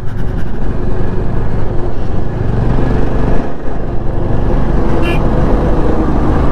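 Motorcycle engine running steadily at cruising speed under a wash of wind and road noise, heard from the rider's camera. A brief high tone sounds about five seconds in.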